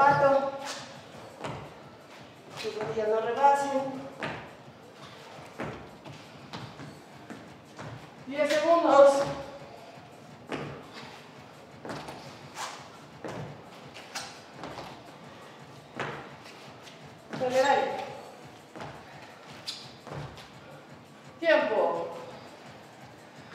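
Sneakers landing and stepping on a wooden floor during jumping exercises, a string of short thuds, with brief bursts of a woman's voice every few seconds, the loudest about nine seconds in.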